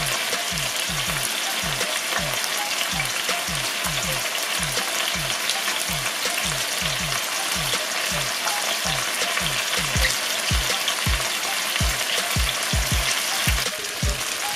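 Chicken thighs frying in hot oil in a sauté pan: a steady, dense crackle and sizzle. Under it, a low thump repeats about three times a second.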